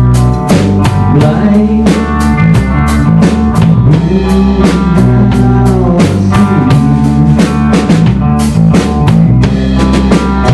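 Live rock band playing: electric guitar, electric bass and drum kit, with a steady beat and the guitar bending notes.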